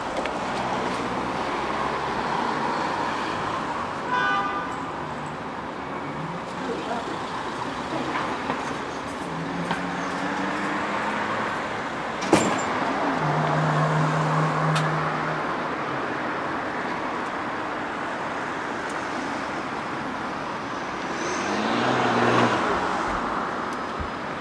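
Street traffic: a steady hum of passing cars, with a sharp click about halfway through and a louder vehicle going by near the end, its engine note rising as it passes.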